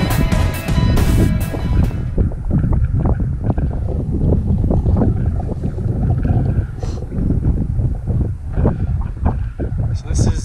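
Background music that cuts off about two seconds in, followed by loud wind buffeting the microphone in gusts.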